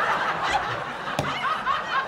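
Audience laughing, many voices overlapping, with a single sharp click about a second in.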